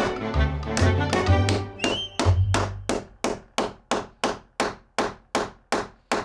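A hammer driving nails into wood while a furring strip is fixed in place: sharp blows, quickening into an even run of about three a second from about two seconds in. Background music plays under the first blows, then drops out.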